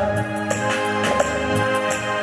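Live band playing an instrumental passage of a Bollywood ballad: a sustained keyboard melody over a light percussion beat, with no singing.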